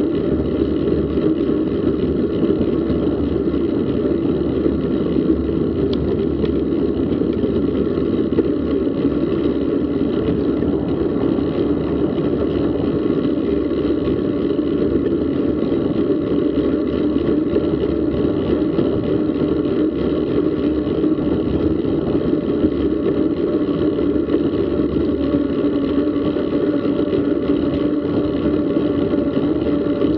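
Steady rush of wind and tyre noise from a bicycle ridden at about 30 km/h, as picked up by a bike-mounted action camera. It runs at an even level, a dull rumble with faint steady tones above it, and no single event stands out.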